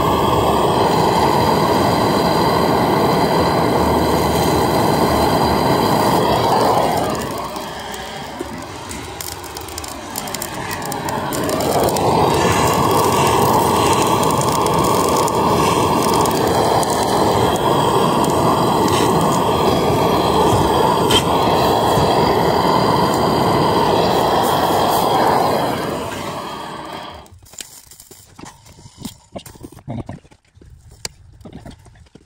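Handheld gas torch burning steadily as its flame heats a copper pipe joint. The sound drops away for a few seconds about a quarter of the way in, comes back, and dies out a few seconds before the end.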